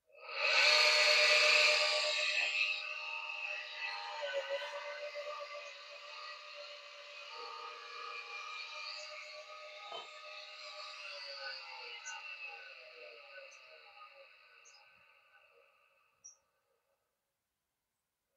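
Two-speed 100 V, 250 W double-ended bench polisher switched on at its fast speed (3,000 rpm), its motor starting with a loud whine, then switched off and coasting down, the whine falling in pitch and fading out near the end. A single knock about ten seconds in.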